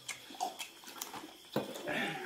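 Close mouth sounds of people eating by hand: scattered small lip-smacking and chewing clicks, then a louder grunt-like mouth sound about one and a half seconds in.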